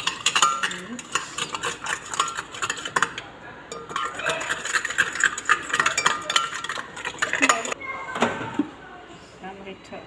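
Eggs and sugar being beaten by hand in a glass bowl, with a utensil clicking rapidly against the glass. The beating stops about eight seconds in.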